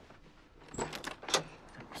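A front door being opened: a few quick metallic clicks and rattles from the latch and handle about a second in, with a short "Oh."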